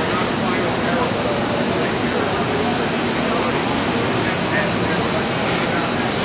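Steady rushing noise of running industrial finishing machinery and air extraction, with a thin steady high whine, and faint voices in the background.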